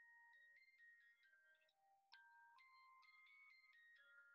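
A musical snow globe playing a tinkling melody, very faint, with single high notes following each other quickly and a brief pause about halfway through.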